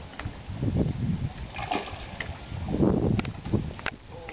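Water splashing and sloshing against a wooden dock, with low gusts of wind rumbling on the microphone and a few sharp clicks near the end.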